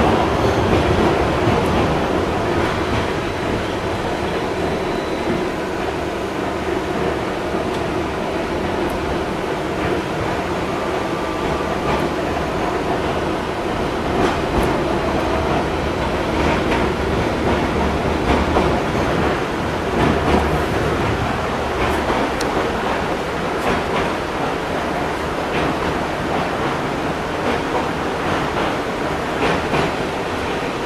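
LM-99AVN tram heard from inside the car as it runs along the track: a steady rumble of wheels on the rails, with scattered clicks and knocks from the track.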